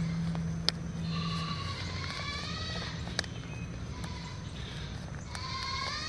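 A drawn-out, high-pitched animal call in the background, starting about a second in and lasting about two seconds. It comes with two sharp clicks from a plastic seedling cell tray being handled.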